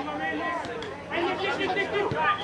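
Several voices talking over one another, a steady chatter.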